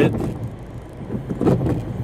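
Inside a car stopped in rain: the steady low running noise of the car, with the windshield wipers sweeping across the wet glass. There is a short louder sound about a second and a half in.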